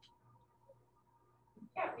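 A hushed pause with a faint click at the start, then a person's voice says "yeah" near the end.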